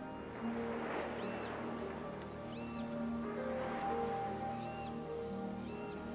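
Slow, gentle orchestral film score with held notes, over which a gull calls four times in short, arched cries. Soft swells of surf washing on a beach rise and fall beneath.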